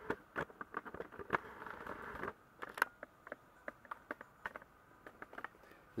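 Handling noise as the camera is moved back: rustling with quick irregular clicks for about two seconds, then scattered light clicks and taps.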